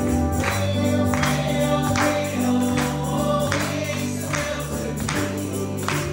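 Live gospel song in church: singing over held bass and keyboard notes, with a steady beat and tambourine.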